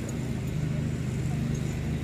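Steady low motor hum, unchanged throughout, with faint voices.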